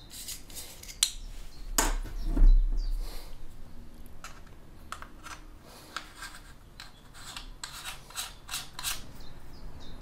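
Handling noise as a plastic clip-on microscope lens is fitted onto a plastic iPhone case by hand. There is rubbing and scraping with a few sharp clicks and knocks, the loudest about two to three seconds in, and lighter rustling and ticks later.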